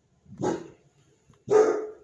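A dog barking twice, about a second apart, the second bark louder.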